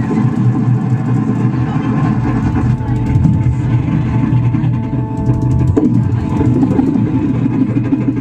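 Live music on the Magic Pipe, a homemade steel-pipe instrument with a bass string and percussion triggers: a steady, bass-heavy beat with drum sounds. Held melody notes sound over it in the middle.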